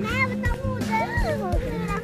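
A small child's high voice calling out with rising and falling pitch, over background music.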